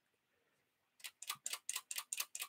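A quick, even run of light clicks, several a second, starting about halfway through: a paintbrush knocking against the metal pans of a watercolour travel tin as red paint is worked up.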